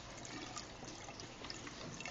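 Faint, steady trickle of water flowing in an aquaponics tank.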